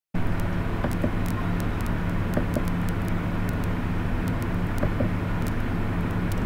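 Steady low hum over a haze of background noise, with a few faint scattered clicks.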